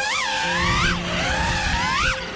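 FPV freestyle quadcopter's brushless motors and propellers whining. The pitch sweeps up and down about three times as the throttle is punched and eased, over background music with steady held low notes.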